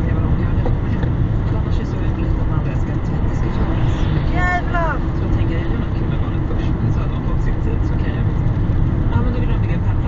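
Steady road and tyre rumble of a car cruising at motorway speed, about 100 km/h, heard inside the cabin, with a short falling, voice-like tone about four and a half seconds in.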